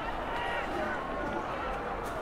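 Many overlapping voices of football players and sideline staff calling out across the field, with no single speaker standing out.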